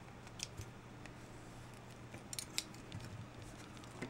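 Scissors snipping through the ends of nylon paracord: a few faint, sharp cuts and clicks, a pair about half a second in and a cluster a little past two seconds.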